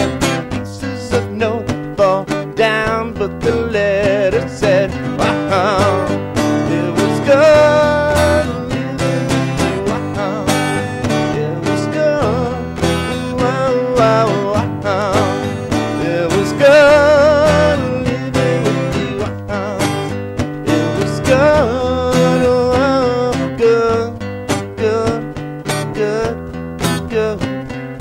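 Acoustic guitar strumming in a steady rhythm, layered with a loop pedal, with a man's voice singing wavering wordless lines over it at times.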